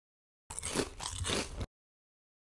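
Crunchy biting and chewing into food, about a second long, starting and stopping abruptly with dead silence either side.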